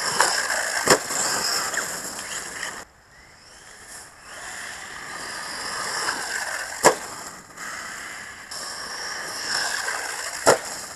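Electric radio-controlled off-road car running on a dirt track: a high motor whine rising and falling with the throttle, cutting out briefly about three seconds in, over the rush of tyres on dirt. Two sharp thuds, about a second in and about seven seconds in, as it lands from jumps.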